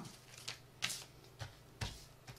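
Hands handling a heated food pouch and its cardboard heater pads: four short rustling taps, roughly half a second apart, over a faint steady low hum.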